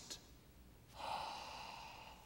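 A man's faint, audible gasping in-breath through an open mouth, starting about a second in and fading away over about a second.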